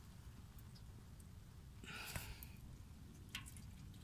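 Faint trickle of old fluid draining from the transfer case drain hole into a drain pan, with a brief soft rustle about halfway and a single click near the end.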